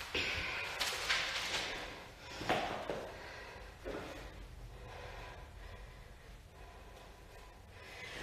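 Quiet handling sounds: a notebook's pages rustling, then a couple of soft thuds as it is set down on the wooden floor, with some breathing, fading to faint room tone.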